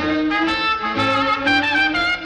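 Swing big-band record in its instrumental stretch before the vocal: a trumpet plays the melody in held notes over the band.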